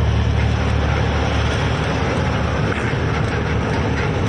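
Steady low drone of a truck's diesel engine with tyre and road noise, heard from inside the cab while cruising on a highway.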